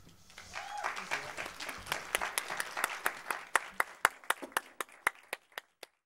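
Audience applause: dense clapping that thins out into scattered single claps and stops near the end.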